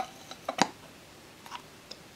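Small metal clicks from a Bolex B8 8mm camera's side door and its latch knob being worked: a sharp click at the start, a second click about half a second later, and a few fainter ticks.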